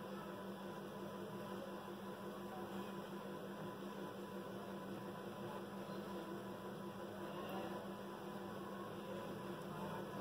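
Faint, steady electrical hum with a constant hiss underneath, unchanging throughout, with no clicks or other events.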